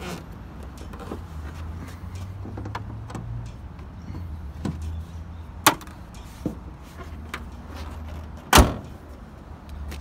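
The bonnet of a 2017 Hyundai i30 being shut: a sharp click a little over halfway through, then a loud slam about three seconds later, over a steady low rumble.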